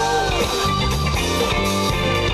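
Live band of keyboards, electric guitar, bass guitar and drums playing, with a woman's held sung note that wavers and ends about half a second in.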